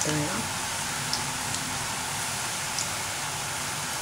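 Karasev dough strands deep-frying in hot oil: a steady sizzle with an occasional faint crackle.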